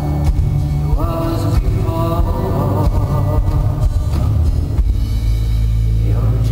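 Live rock band music, heavy in bass and drums, from a concert hall. A voice sings a melodic line over it in the first half.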